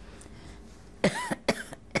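An elderly woman coughs three times in quick succession, starting about a second in. The first cough is the longest.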